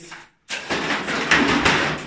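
A crash and clatter as curtain fittings and hooks are pulled loose and fall: a loud rattling racket starting about half a second in and running for about a second and a half.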